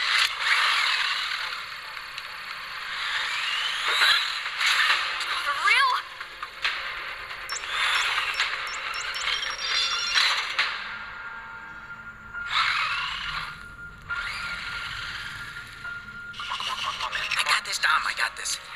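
High whine of a toy remote-control car's small electric motor, rising in pitch several times as it revs and drives off, with scrapes and skids along the ground. Near the end, chalk scratches across concrete.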